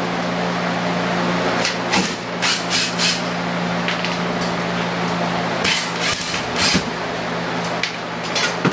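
A series of sharp knocks and clicks from hand-tool work with a cordless driver on a plywood board screwed to the wall, as the board is being taken down. They come in a cluster about two to three seconds in and another around six to seven seconds.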